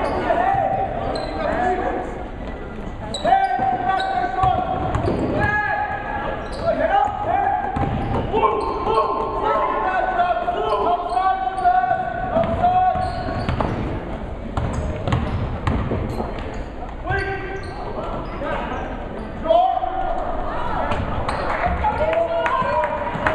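A basketball bouncing on a hardwood gym floor as it is dribbled up the court, with players and spectators calling out in a large gym.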